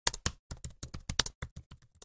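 Computer keyboard typing: a quick run of key clicks, about eight a second, growing softer near the end.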